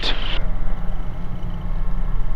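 Steady low drone of a Cabri G2 helicopter's rotor and airflow heard inside the cockpit during a practice autorotation, a simulated engine failure.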